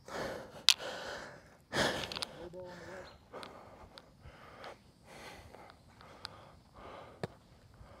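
A person breathing hard, a run of short noisy breaths and sniffs, the strongest about two seconds in: out of breath after a sprint.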